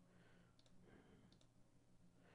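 Near silence: a faint low hum with two faint computer mouse clicks in the middle.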